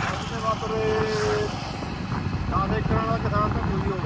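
Steady low engine and road rumble from the vehicle being ridden in, with a voice heard twice over it, once holding a long note about a second in and again briefly near three seconds.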